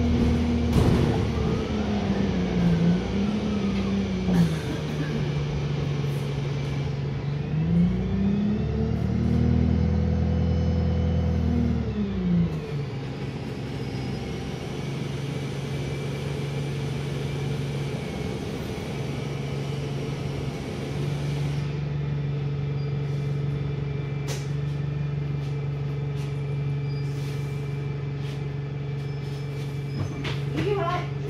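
Wright StreetLite single-deck bus heard from inside the cabin: the diesel engine note dips, climbs as it pulls and holds, with a faint high whine rising and falling with it, then drops at about twelve seconds to a steady low idle. A few short sharp clicks come in the second half.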